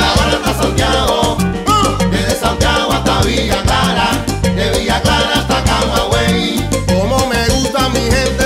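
Recorded Cuban timba (salsa) band music: dense percussion strokes over a heavy bass line, with melodic lines above.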